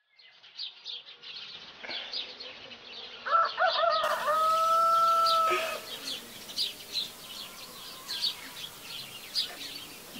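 A rooster crows once, a long call starting about three seconds in, over the steady chirping of small birds.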